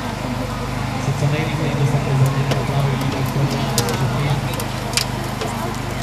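An engine running with a steady low hum, with a few sharp metallic clicks and knocks and people's voices in the background.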